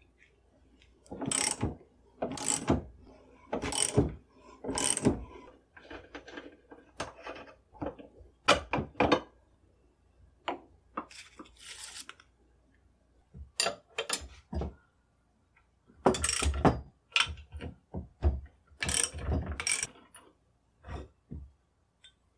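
Socket ratchet wrench clicking in four short bursts about a second apart as the nuts on a barrel vise's clamping bolts are loosened. After that come scattered metal clinks and knocks as the nuts, blocks and cut rifle barrel are handled and set down, loudest about two thirds of the way through.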